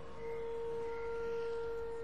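A single steady ringing tone, held and faint, with a few weaker higher overtones above it.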